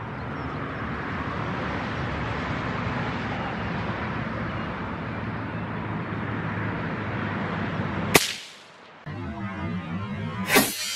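Steady outdoor background noise, cut by a single sharp crack of a .17 Hornet rifle shot about eight seconds in, which rings out briefly before the sound drops away.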